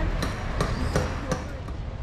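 Four sharp knocks, evenly spaced at about two or three a second, over a steady low rumble; they stop about one and a half seconds in.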